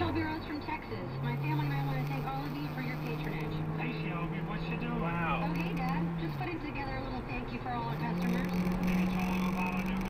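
Car cabin noise at highway speed: a steady low engine and road hum that drops in pitch about six seconds in and rises higher again about two seconds later. Faint talk is heard under it.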